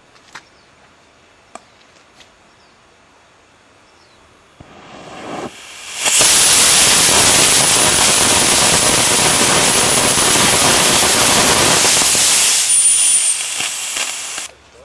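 A 54 mm three-grain experimental solid rocket motor with black-formula propellant, static test firing at the upper end of its Kn range. It is quiet for about four and a half seconds while the igniter works, comes up to full thrust over about a second and a half, then burns loudly and steadily for about six seconds, a dense rushing noise with a thin high whistle over it, before tailing off near the end.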